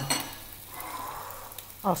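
Chopped duck thighs sizzling steadily as they fry in a pan in their own fat, with no oil added.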